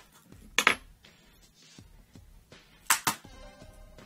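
Small flathead screwdriver clicking against the laptop's display panel and lid as the LCD panel is pried loose from its adhesive strips. Two pairs of sharp clicks, about half a second in and about three seconds in.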